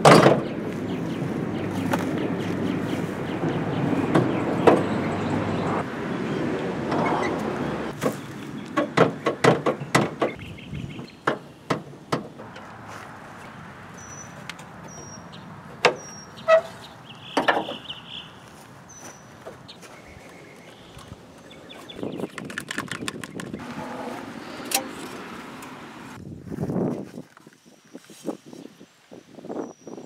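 Hood and engine-bay handling on a Chevrolet van: a sharp clunk at the very start, then scattered clicks, knocks and rattles of metal and plastic parts being handled, with a dipstick drawn out near the end.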